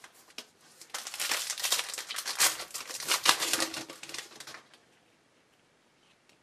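A foil trading-card pack wrapper being torn open and crinkled by hand, a dense crackling run starting about a second in and lasting about three and a half seconds.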